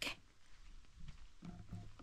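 Quiet outdoor background with a low rumble and a faint, short voice-like sound about one and a half seconds in.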